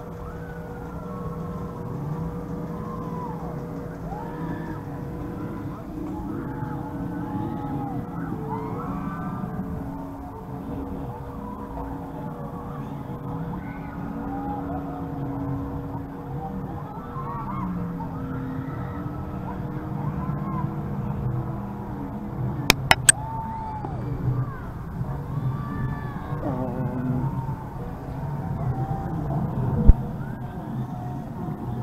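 Outdoor crowd ambience: indistinct distant voices over a steady droning hum, with three sharp clicks in quick succession about 23 seconds in.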